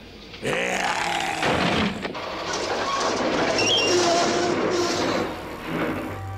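A cartoon monster's vocal sound effects: a short, deep grunt about half a second in, then a long, noisy roar lasting several seconds that fades out near the end.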